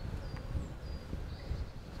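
Outdoor woodland ambience: a low wind rumble on the microphone with a few faint, brief high chirps.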